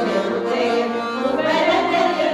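Women's folk ensemble singing a Bashkir folk song, the front singer's voice leading the group, with a new phrase starting about one and a half seconds in.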